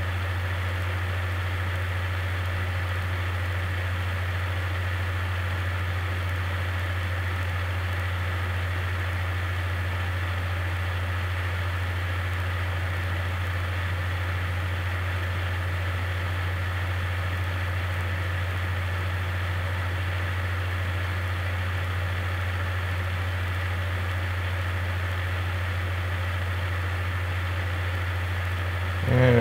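A steady low hum with a faint hiss behind it, unchanging, with no other sound on top.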